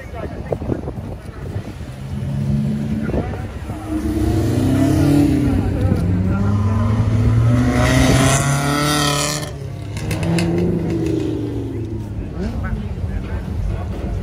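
A classic sports car's petrol engine accelerating hard along the track, its pitch rising and falling through the gears. It is loudest as the car passes close about eight seconds in, then fades away.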